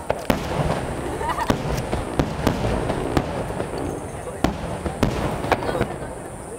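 Aerial firework shells bursting overhead: about eight sharp booms at irregular intervals over a continuous rumble of further bursts.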